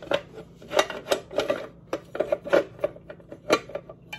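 Metal cake-pop baking plate clicking and clacking against the housing of a Babycakes cake pop maker as it is pressed and turned by hand, still searching for the notch that seats it. About a dozen irregular sharp clicks.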